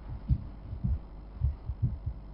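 Dull low thumps, about four irregularly spaced, over a steady low electrical hum.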